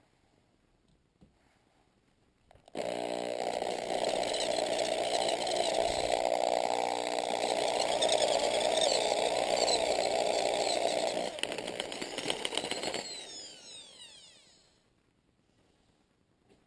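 Electric hand drill with a twist bit boring a hole in a metal bar. The motor starts about three seconds in and runs steadily under cutting load, then cuts off and winds down with a falling whine.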